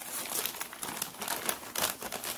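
Wrapping being handled and unwrapped, crinkling and rustling in a run of quick crackles.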